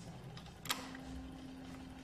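A lever switch on a metal control panel clicks once, a little past halfway, and a steady low hum starts with it.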